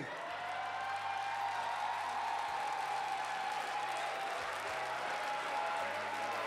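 Audience applauding steadily after a contestant's introduction.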